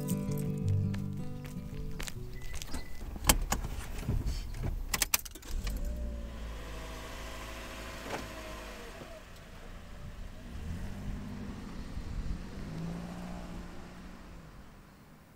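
Music fades out, followed by a few sharp clicks. Then a vehicle engine runs with a low rumble, its pitch rising and falling.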